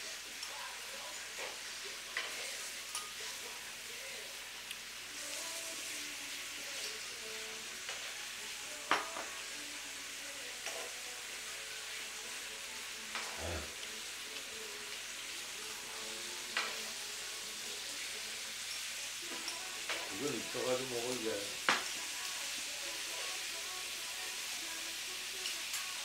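Steady sizzling of meat frying in a pan, with a few sharp clicks of a spoon against a bowl while eating.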